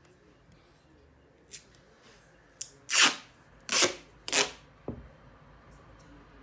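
Grey tesa duct tape being pulled off its roll in three loud rips about half a second apart, with a few softer ticks before and after.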